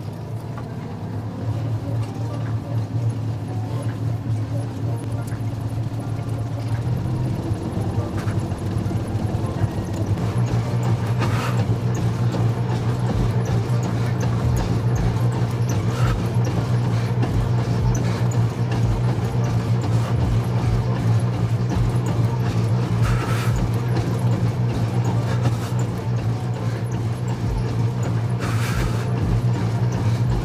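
T-2 treadmill running, with a steady motor hum and the irregular thud of running footfalls on the belt. The hum climbs in pitch and loudness over the first ten seconds or so as the treadmill speeds up, then holds steady.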